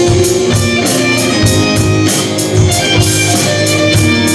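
A live band plays an instrumental passage: strummed acoustic guitars and an electric guitar, with a drum kit keeping a steady beat on the cymbals.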